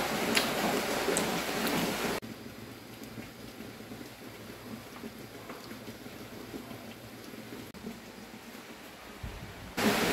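Steady hiss of rain, which drops sharply in level about two seconds in and stays quieter, with a few faint clicks.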